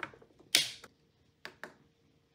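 Hard plastic clicks from parts inside a Bambu Lab AMS filament unit being pressed and handled: one loud snap about half a second in, then two lighter clicks close together about a second later.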